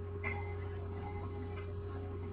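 A steady low electrical hum with a few faint ticks.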